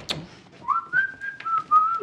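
A person whistling a short tune of a few notes, starting about two-thirds of a second in, after a brief click at the very start.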